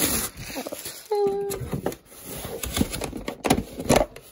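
Cardboard box and packaging being handled while the kit is pulled out: irregular rustling, scraping and small knocks, with one brief squeak a little after a second in.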